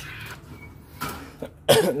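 A man coughs and clears his throat once near the end, a loud short rasp that leads straight into speech; before it, only low, quiet background noise.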